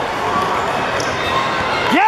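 Live sound of a youth basketball game in a large, echoing hall: a steady din of spectators' voices, with a basketball bouncing on the hardwood court.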